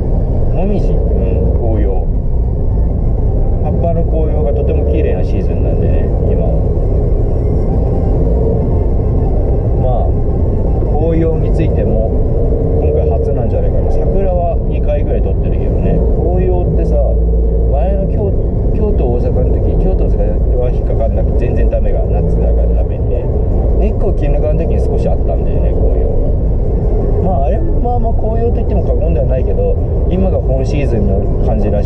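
Steady low rumble of a car's engine and road noise inside the cabin while driving, with a man talking over it throughout.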